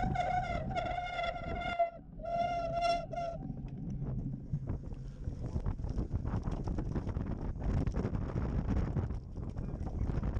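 Cyclocross bike riding over bumpy grass, with its frame and wheels rattling and wind buffeting the microphone. A loud held note at a steady pitch sounds twice in the first three seconds.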